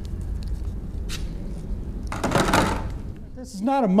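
Paint roller being swapped by hand: a brief scraping rustle a little past two seconds in, over a steady low rumble, then a man starts speaking near the end.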